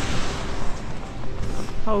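Footsteps in trodden snow, a hiker crunching uphill with irregular steps over a steady rushing noise.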